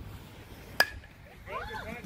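A bat hitting a pitched baseball: one sharp crack with a short ring about a second in. Spectators start shouting right after.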